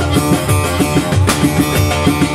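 Live music led by an amplified saz (bağlama): quick plucked notes over a steady low beat.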